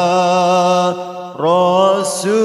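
Sholawat, devotional Arabic chanting in praise of the Prophet, sung by a single voice in long, slightly wavering held notes. The note fades about a second in, and a new one slides up and is held.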